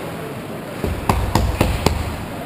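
Ice hockey goalie's stick tapping four times in quick succession, about a quarter second apart, with a low thumping underneath.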